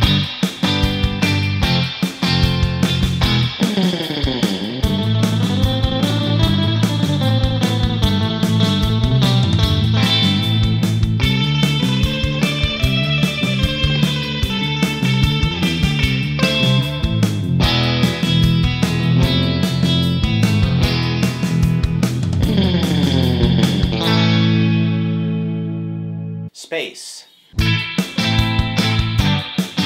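Electric guitar (a Stratocaster with single-coil pickups) playing surf-rock lines through a 1966 Fender spring reverb tank set very wet and drippy, over backing drums and bass. Near the end a held chord rings out and fades, there is a brief break, and playing resumes.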